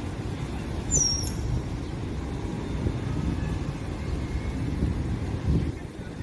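Steady low outdoor rumble of background traffic noise, with two short high chirps falling in pitch in quick succession about a second in.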